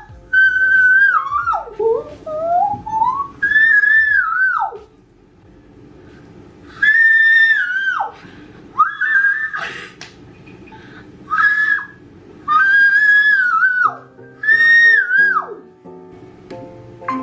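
A young woman singing very high, in the top of her range, so that the notes sound close to whistling. The held notes and sliding phrases last a second or two each, with short breaks between them, and several phrases fall away at the end.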